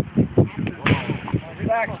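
Spectators' voices with a single sharp crack a little under a second in, as the pitched baseball reaches home plate.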